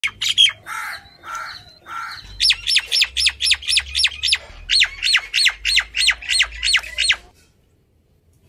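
Indian ringneck parakeet calling: a few harsh squawks, then a fast run of short, high, piercing screeches, about four a second with a brief break in the middle, which stop shortly before the end.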